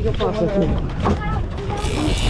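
Short shouted exclamations from several people over a steady low rumble aboard an offshore fishing boat.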